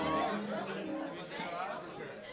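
Crowd chatter: several people talking at once, with no music playing.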